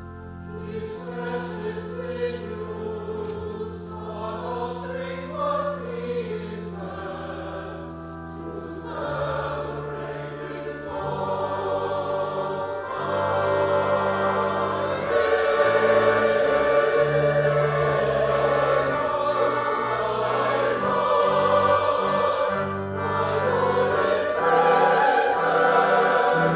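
Mixed church choir singing with organ accompaniment, the organ holding long low notes beneath the voices. The music grows louder about halfway through.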